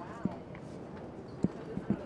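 Hooves of harnessed draft horses pulling a wagon, clip-clopping on pavement at a walk: a few sharp, uneven strikes, with a low murmur of voices behind.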